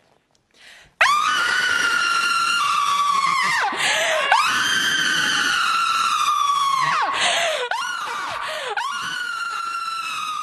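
A person screaming at full voice into a podium microphone as a deliberate protest scream. The screaming starts abruptly about a second in and comes as a run of long, high screams, each held for a few seconds and dropping in pitch at its end before a brief break.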